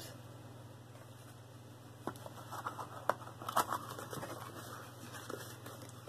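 Jewelry and its box being handled: light rustling and small clicks from about two seconds in, over a steady low hum.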